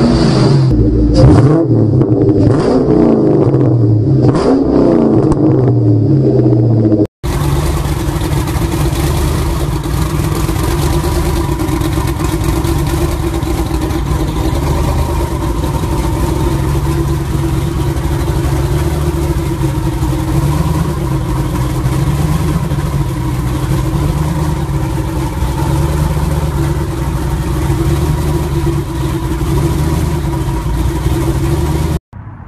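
Supercharged V8 engine revved up and down repeatedly for about seven seconds. After a sudden cut, another V8 runs steadily at a constant speed for the rest of the time.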